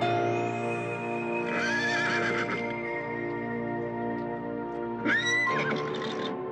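Two horse whinnies over steady background music: a wavering one about a second and a half in, and a louder, higher-pitched one about five seconds in.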